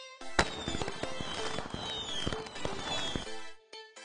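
A sharp bang about half a second in, then dense crackling with many pops and a few falling whistles, like a fireworks sound effect. It stops shortly before the end.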